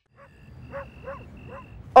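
Night ambience: a high, steady cricket chirp that comes and goes, with about four short distant dog barks spaced about a third of a second apart.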